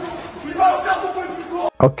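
Several people shouting and calling to one another in a noisy, lo-fi recording. It cuts off abruptly near the end, where a man starts speaking clearly.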